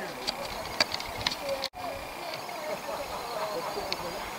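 Indistinct voices of a group talking some way off, with a few sharp clicks in the first second and a half and another near the end. The sound drops out for an instant just before the two-second mark.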